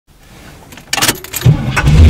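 Keys jangling on the ring as the ignition key of a Pontiac Firebird Trans Am is turned, then the engine starts with a sudden loud low rumble about one and a half seconds in and keeps running.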